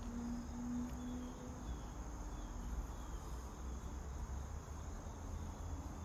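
Faint insect chirping, a short high note repeating evenly, over a low rumble.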